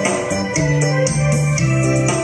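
Karaoke backing track playing an instrumental passage: electronic keyboard melody over held bass notes, with a steady beat of light, high percussion strokes.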